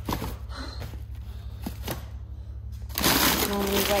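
Plastic bags of frozen food crinkling and rustling as they are handled and shifted in a chest freezer, with scattered light knocks, growing much louder about three seconds in. A steady low hum runs underneath.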